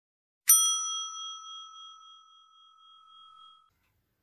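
A single clear bell ding sound effect from a subscribe-button animation, struck about half a second in and ringing on as it fades over about three seconds.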